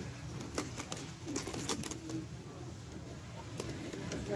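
Clear plastic clamshell pastry container clicking and crackling as it is handled and lifted, in several sharp clicks, most of them between about half a second and two seconds in and one more near the end, over a steady low store hum.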